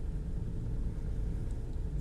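Steady low background rumble with a faint steady hum above it, even in level, in a pause between spoken phrases.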